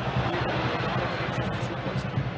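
Steady crowd noise from the spectators in a football stadium, an even wash of many voices with no single event standing out.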